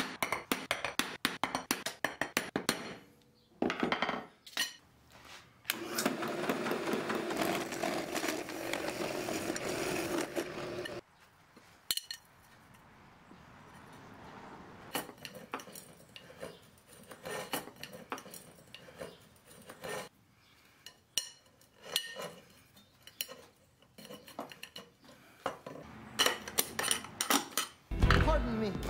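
Sharp metal clinks and knocks of small hand tools and steel square tubing on a steel workbench. In the middle, about five seconds of a machine running steadily, followed by further scattered clinks.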